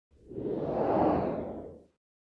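Whoosh sound effect from a TV station ident: a single noisy swell that rises, peaks about a second in and fades away.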